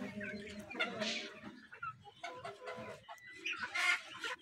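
Domestic ducks giving a run of short, low calls, with the loudest call near the end.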